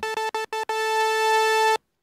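Korg Minilogue synthesizer playing one bright, buzzy note: a few quick repeated stabs on the same pitch, then the note held for about a second and cut off sharply.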